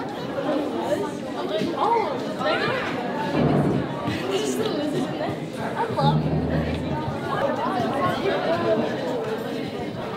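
Background chatter of many people talking at once in a large indoor room, with no single clear voice.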